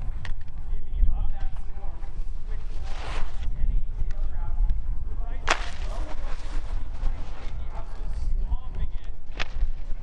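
Skis running over the hard halfpipe snow with a steady low rumble, broken by sharp cracks of the skis hitting the icy wall. The loudest crack comes about five and a half seconds in, with lighter ones near the start and near the end.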